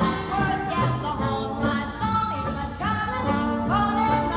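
Broadway pit orchestra playing a ragtime-style instrumental passage in a poor-quality, dull-sounding recording, with several rising smeared notes over a steady accompaniment.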